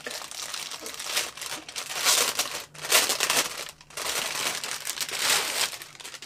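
Thin clear plastic packaging bag crinkling in irregular bursts as it is opened and a canvas cosmetic bag is pulled out of it.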